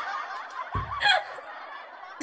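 People laughing together, heard over a video call, with a louder burst of laughter about a second in.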